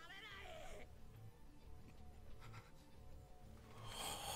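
Near silence, with a faint wavering, strained cry in about the first second: an anime character's voice played very low.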